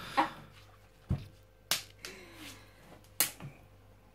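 Short, sharp plastic clicks and snaps, about four spread across a few seconds, as fingers pry at the lid and sealing strip of a plastic ice-cream tub.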